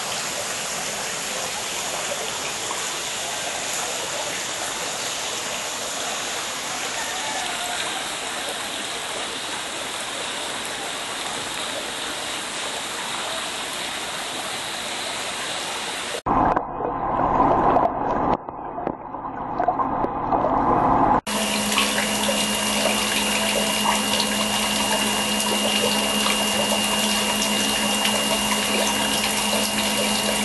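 Water running and bubbling in fish-hatchery tanks as a steady rush. About halfway through it cuts to a louder, rougher few seconds, then to water noise over a steady hum.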